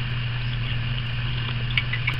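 Steady low electrical hum with an even background hiss: room tone in a pause between words.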